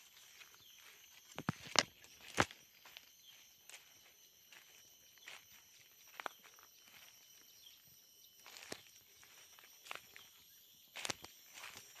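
Footsteps crunching through dry leaf litter and twigs on a forest floor, irregular crackles and snaps, with the loudest crunches about two seconds in and again near the end.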